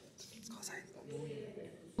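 Quiet, low speech from a man's voice, murmured rather than spoken aloud, with a brief dip in level just after the start.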